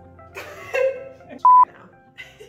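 A single short electronic bleep, one steady high tone and the loudest sound here, about one and a half seconds in. It falls among quiet laughing speech, like an edited-in censor bleep.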